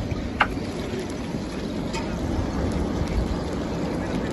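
Steady low rumbling noise of wind buffeting the microphone, with a few sharp cracks from an advancing a'a lava flow, the clearest about half a second in and another about two seconds in.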